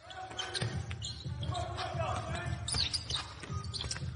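Basketball game sound cutting in abruptly: a ball dribbled on a hardwood court with repeated thuds, a few high sneaker squeaks, and players' voices calling out.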